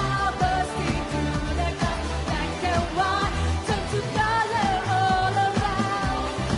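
A woman sings a pop worship song into a handheld microphone over a full pop band accompaniment, with a steady beat throughout.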